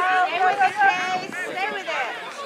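Several adult voices close by on the sideline, talking over each other with some laughter.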